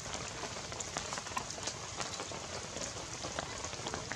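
Rain falling on wet ground and leaves: a steady hiss with many scattered drip ticks.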